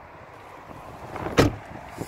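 A car door of a 2012 Skoda Fabia Estate being shut, with one loud thump about one and a half seconds in.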